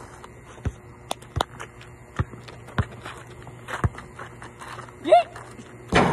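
Basketball bouncing on an outdoor asphalt court: about seven separate dull thuds at irregular gaps of half a second to a second. A short rising-and-falling shout comes in a little after five seconds.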